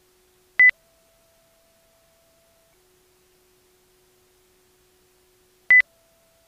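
Two short, loud electronic beeps about five seconds apart, over a faint steady tone that steps up in pitch after each beep and drops back about two seconds later.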